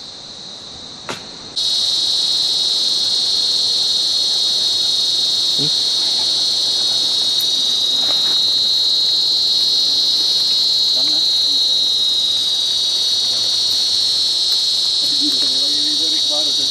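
Loud, steady insect chorus, one unbroken high-pitched drone, that cuts in abruptly about a second and a half in.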